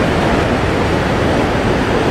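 Loud, steady rush of water from Niagara Falls and the churning river rapids at its brink.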